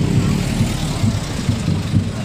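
A dump truck's engine running as the truck drives close past, a steady low rumble.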